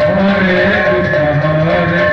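Live kirtan folk music: long held, wavering melody tones, with a barrel drum played under them.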